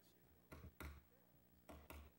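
Four short knocks in two close pairs, about a second apart, over a faint steady hum in a quiet room.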